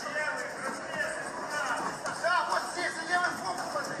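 Audio of a boxing broadcast coming from a tablet's small speaker: a thin voice with music behind it, lacking low end.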